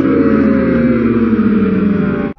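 Crowd of young spectators letting out a long, drawn-out "ooooh" together that slowly falls in pitch, their reaction to a skateboarder's hard slam on the pavement.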